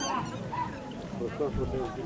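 Murmur of an outdoor crowd, with dogs giving short whines and yelps over it.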